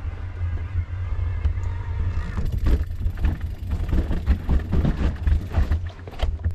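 Electric mountain bike rolling over a rocky, root-strewn trail, with a steady low rumble on the microphone. From a couple of seconds in, the tyres and frame add irregular knocks and rattles as it goes over stones and roots.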